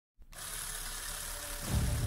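Edited intro sound: a steady hiss begins just after the start, and a low rumble swells in near the end.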